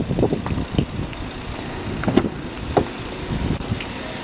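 A few short knocks and clicks as the driver's door of an Audi A6 Avant is unlatched and swung open, over steady outdoor background noise.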